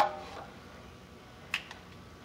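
Metal clink ringing briefly and fading, then one sharp click about one and a half seconds in: the steel propane cylinder and its mounting ring on a Tennant M20 floor scrubber being handled during a tank change.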